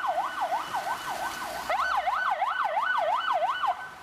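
Electronic siren of a GAZelle Next ambulance sounding a fast yelp, its pitch rising and falling about three times a second; it cuts off shortly before the end.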